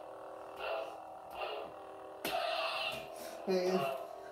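Force FX lightsaber hilt's speaker playing the blade's steady electronic hum, swelling into swing sounds as the saber is moved, with a sudden louder burst about two seconds in.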